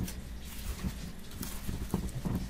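A few light, irregular knocks and bumps from hands handling a motorcycle helmet's hard shell on a table, over a steady low hum.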